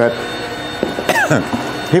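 A man's voice: a brief falling vocal sound about a second in, then a cough at the end, over a faint steady machine hum.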